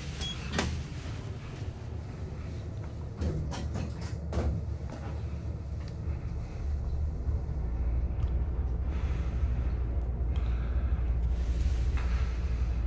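Fujitec elevator car: a few knocks as its sliding doors close, then a low rumble that builds as the car starts travelling upward.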